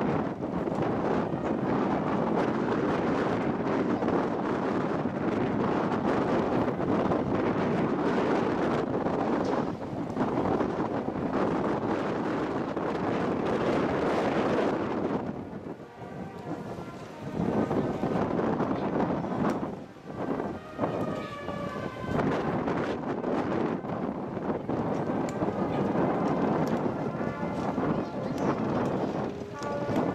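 Wind buffeting the microphone over the sound of a crowd walking past, dropping away briefly about halfway through. In the later part, held musical notes come through underneath.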